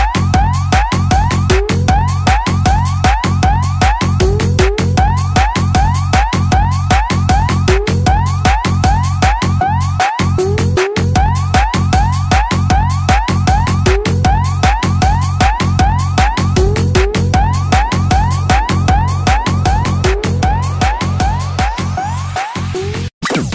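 Khmer 'vai lerng' dance remix: a siren-like sound repeats in quick rising sweeps, several a second, over a pounding beat and heavy bass.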